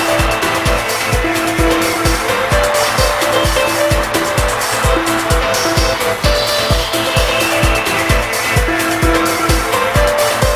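Old-skool house dance music from a DJ mix: a steady four-on-the-floor kick drum at about two beats a second under repeating sustained synth notes and busy hi-hats.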